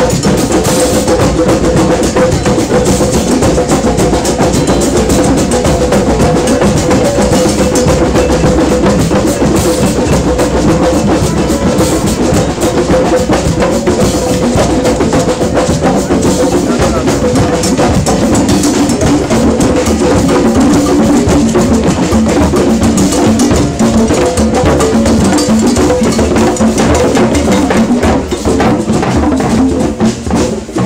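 Drum circle of many hand drums, congas and djembes, with a drum kit among them, playing a loud, dense, continuous group rhythm.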